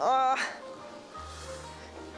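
A short vocal exclamation rising in pitch, then soft background music with steady held notes.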